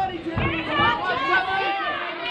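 Spectators' chatter: several voices talking and calling out at once, overlapping, with no single voice standing out.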